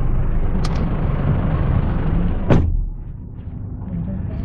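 Steady low rumble of a stationary car's cabin with street traffic, a short click under a second in and a loud thump about two and a half seconds in, after which the rumble is quieter.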